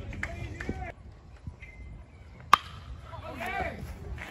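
A baseball bat hits a pitched ball once, a single sharp crack about two and a half seconds in, followed by spectators' voices shouting.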